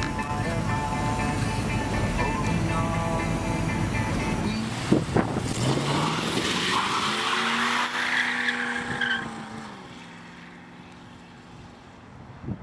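Music for the first few seconds, then a 1973 Plymouth 'Cuda's V8 revving up as the car pulls away, with tires squealing, before the engine sound falls away and fades as the car drives off.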